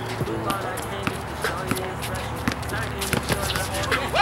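Basketball bouncing on an outdoor concrete court, with scattered sharp knocks of the ball and footsteps, over rap music with vocals.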